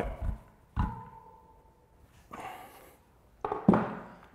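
Metal workshop tools on a bicycle cassette: a sharp metallic clunk about a second in that rings on for about a second, as the lock ring tool and wrench finish tightening the cassette lock ring. A soft rustle follows, then further knocks near the end as the tools come off the wheel and are set down.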